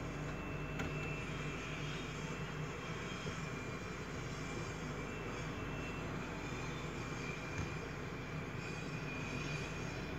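A steady mechanical drone with a low hum, unchanging throughout.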